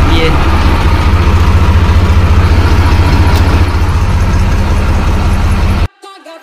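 Swaraj tractor's diesel engine idling steadily with a deep, even beat, running in cold weather. The sound cuts off suddenly near the end.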